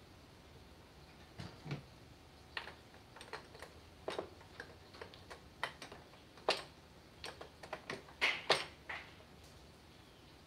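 Irregular light clicks and taps of hand tools and small parts on an outboard motor's exposed powerhead as it is worked on by hand. They begin a little over a second in, with a few louder knocks near the end.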